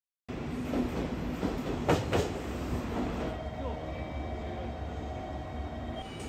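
Subway train rumbling through a station, with two clanks about two seconds in and a steady whine from about three seconds in.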